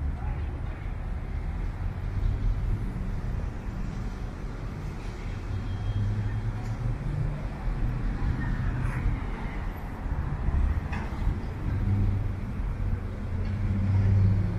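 Road traffic around a city bus terminal: transit bus and other vehicle engines running as a steady low rumble, with a vehicle drawing closer and getting louder near the end.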